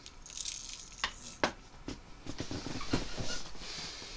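Quiet handling sounds: a few light clicks and knocks with soft rustling as locking pliers gripping a freshly painted crankbait are moved and set down on a workbench. The two sharpest clicks come about a second and a second and a half in.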